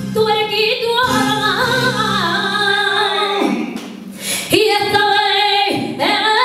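A woman singing a flamenco-style song into a handheld microphone, with long, wavering, ornamented held notes. The voice breaks off briefly about four seconds in and then comes back.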